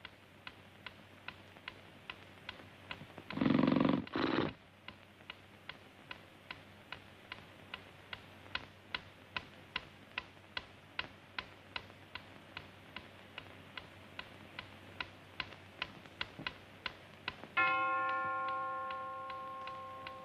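Mantel clock ticking steadily, a little over two ticks a second, then striking once about three seconds before the end: one bell-like chime that rings on and slowly fades, the clock striking one. About three and a half seconds in, a brief loud rushing noise lasts about a second.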